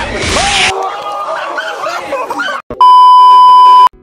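Excited shouting voices of a crowd, cut off by a short silence, then a loud, steady, high-pitched censor bleep lasting about a second near the end.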